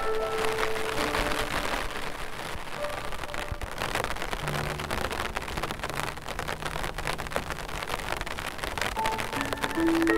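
Steady rain pattering, dense with fine drop clicks, under slow, sparse piano: a held note at the start, a few soft low notes in the middle, and the playing picking up again near the end.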